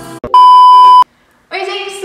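A single loud, steady electronic beep of one pitch, lasting under a second, that cuts off sharply. A woman's speech starts about a second later.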